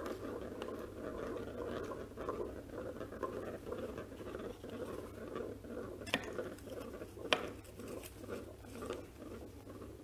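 Hands handling a plastic draw ball and twisting it open to take out a paper slip, over a steady low rustling; two sharp clicks about six and seven seconds in.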